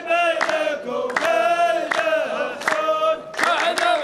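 A large chorus of men chanting a line of Saudi qaf verse in unison, held notes over a beat of hand claps from the rows. The clapping quickens near the end.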